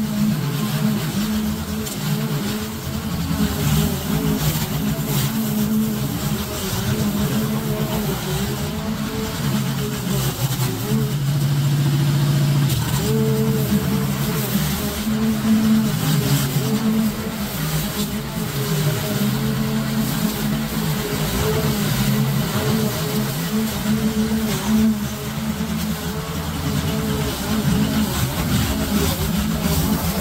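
Petrol walk-behind lawn mower engine running under load as it cuts through long, overgrown grass, its pitch wavering and dipping at times as the thick grass drags on it.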